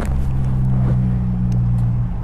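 Harley-Davidson Fat Bob's Milwaukee-Eight 107 V-twin engine running at a steady, even pitch.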